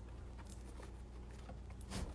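Faint handling sounds: a few small clicks and light rustles as hands press artificial flower stems into moss on a canvas and hold a hot glue gun, over a low steady hum.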